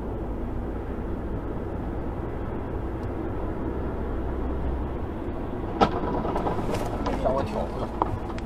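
Steady road and engine noise heard from inside a moving car, broken about six seconds in by one sharp bang of a collision on the road ahead, followed by scattered rattling and clatter.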